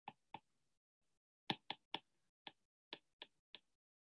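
Stylus tip tapping and clicking on a tablet's glass screen while handwriting: about nine sharp, irregular taps.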